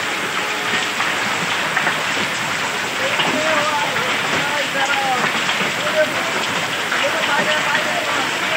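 Heavy rain and hail falling on a wet street: a dense steady hiss of rain flecked with many small sharp hail impacts.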